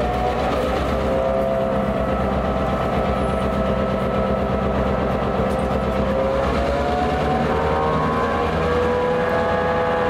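EMD diesel-electric locomotives idling: a steady low engine throb with several whining tones above it, a couple of which drift slightly up in pitch around seven seconds in.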